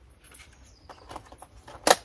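Lid of a plastic food tub being fitted by hand: a few faint plastic taps, then one sharp click near the end as it snaps on.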